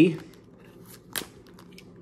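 Quiet handling of a shrink-wrapped trading card box and a utility knife, with one short, sharp click or snip about a second in and a few faint ticks after it.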